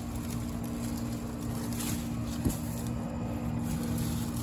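A steady low mechanical hum with a low rumble beneath it, from a motor or engine running in the background, with a single sharp click about two and a half seconds in.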